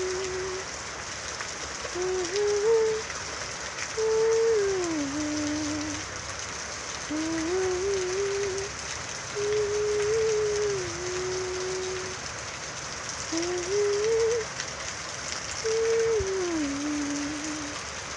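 Steady rain falling on tree foliage, with a voice humming a slow melody over it in short phrases with pauses between them.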